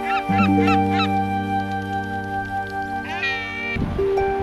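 Gulls calling over sustained background music: a quick run of short rising-and-falling calls in the first second, then one longer rising call a little after three seconds in.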